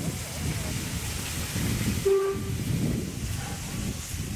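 Wind buffeting the microphone in a low, continuous rumble, with one short toot of a steam locomotive whistle about halfway through.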